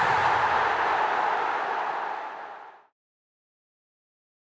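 A steady rushing noise, with no tune or pitch, that fades over the last second and cuts to silence just under three seconds in.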